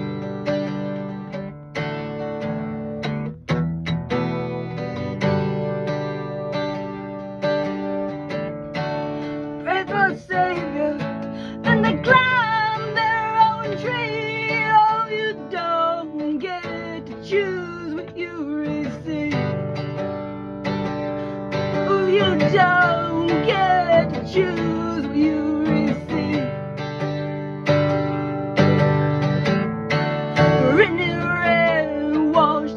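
Acoustic guitar strummed steadily. From about ten seconds in, a voice sings along over it.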